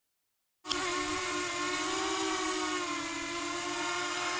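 Walkera Runner 250 racing quadcopter's brushless motors and propellers giving a steady whine while it hovers low, the pitch wavering a little as it is steered. The sound starts abruptly about half a second in, after dead silence.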